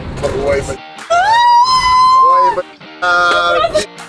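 Short music sting laid over the scene: a pitched note slides up, is held for about a second and a half, then falls away, followed by a shorter steady note, after a moment of chatter.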